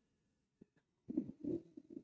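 A pause in speech: for about a second almost nothing is heard, then a man's faint, low, hesitant vocal sounds, like throat noises or a murmured filler, just before he speaks again.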